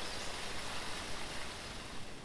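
Waterfall: a steady rush of falling water.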